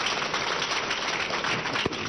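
Church congregation applauding, a steady dense clapping.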